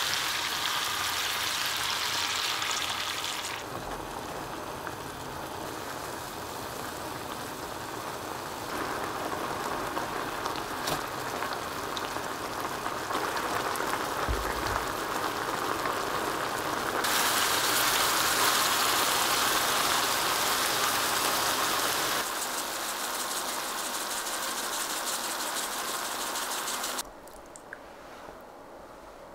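Chicken pieces and rice cakes in spicy sauce sizzling and bubbling in a cast-iron skillet. The sizzle steps louder and softer several times and drops away sharply near the end.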